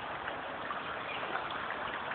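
A small forest stream running, a steady, even rush of water.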